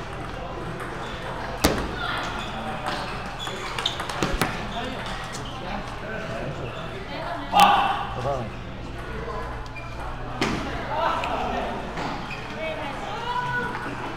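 Table tennis balls clicking off bats and tables, a handful of sharp knocks spread over several seconds, over a steady murmur of voices in a large hall.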